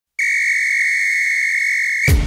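One long, steady high-pitched whistle tone lasting nearly two seconds.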